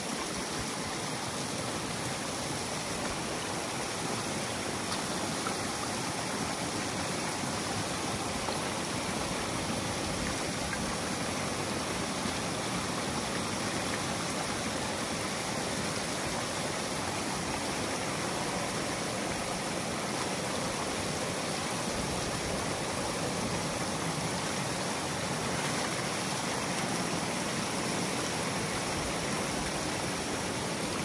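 Water rushing steadily through a breach opened in a beaver dam, pouring down over the sticks and mud into the channel below as the pond drains.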